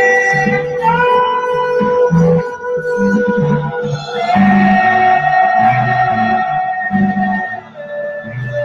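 A psych-rock band playing live: a bass line moving under electric guitar and long held keyboard notes. The held note changes pitch about halfway through.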